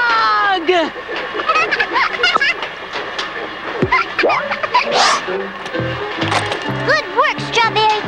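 Animated-cartoon soundtrack: music underscore with sliding cartoon sound effects and wordless character vocal sounds. There is a whooshing burst about five seconds in, then a stepping low bass line near the end.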